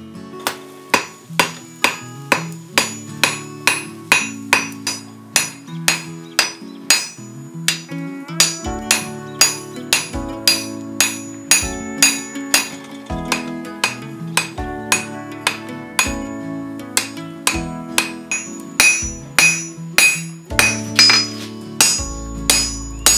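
Hand hammer striking a hot steel billet on an anvil in a steady run of blows, about two a second, with the anvil ringing after each strike: the billet is being forged under the hammer. Background music with plucked-guitar chords plays underneath.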